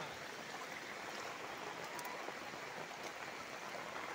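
Faint, steady wash of water noise from rain and running floodwater.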